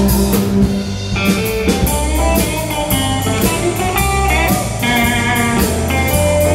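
Live country band playing an instrumental break: a Telecaster-style electric guitar takes a lead line with bent notes over bass and a steady drum beat.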